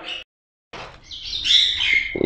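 A bird calling: a cluster of short high calls in the second half, ending in a falling note, after a moment of dead silence.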